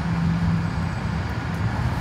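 Steady low rumble of road traffic, with a steady low hum through the first part of a second.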